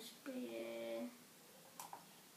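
A child's voice humming a single held note for under a second, then a brief click near the end.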